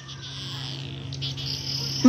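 Insects chirring steadily in the background, a high, even buzz that grows a little louder about halfway through, over a low steady hum.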